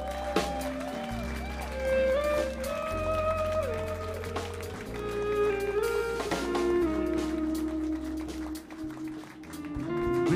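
Live band playing: an electric guitar plays a melodic lead with several bent notes over sustained bass and drums.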